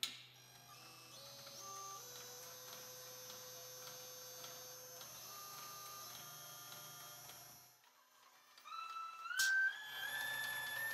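A push-button clicks, then an automatic insulation-taping machine runs with a faint hum and the whine of its motor drives, its steady tones shifting in pitch as the ring head spins around the coil bar. The drive stops about 8 s in, and near the end the whine climbs in steps as it speeds up again.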